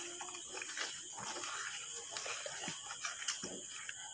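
Wooden spatula stirring thick gooseberry pickle masala in a metal pan: soft, irregular scrapes and knocks. Under them runs a steady high-pitched drone.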